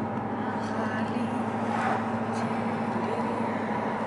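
Steady engine hum and tyre noise inside the cabin of a moving car.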